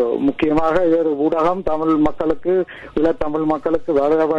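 Speech only: a person talking continuously, with no other sound standing out.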